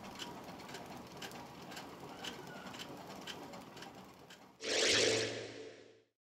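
Faint mechanical clicking, about two clicks a second, in the soundtrack of a video playing on the Raspberry Pi. Near the end comes a louder rushing burst of about a second with a low hum under it: the chapter-transition sound.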